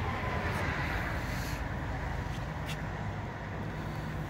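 A steady low hum with background noise, unchanged throughout.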